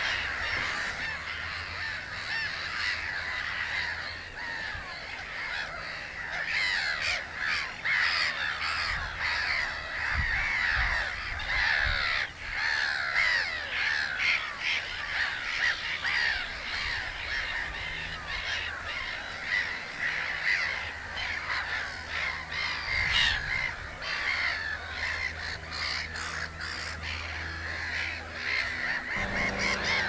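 Many gulls calling at once: a dense, unbroken chatter of overlapping harsh calls.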